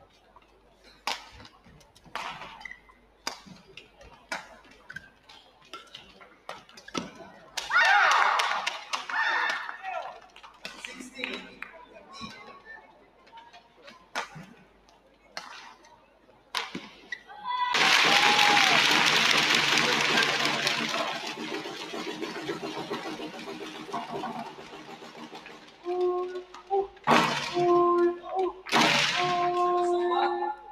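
Badminton rackets hitting a shuttlecock in a rally, sharp hits about once a second, broken by a short crowd shout. From a little past halfway comes a loud, sustained crowd cheer that fades off, followed near the end by further loud bursts with steady tones.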